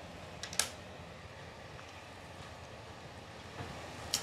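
Quiet room tone with faint handling noise: a few small clicks, the clearest about half a second in, as fingers work open a dead shearwater's gut, which is packed with plastic.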